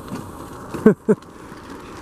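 A man's voice making two short syllables about a second in, over steady outdoor background noise.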